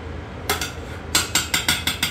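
Metal spoon knocking against a stainless steel cooking pot: one sharp tap about half a second in, then a quick run of about six taps in the second half, as margarine is knocked off the spoon into the pot.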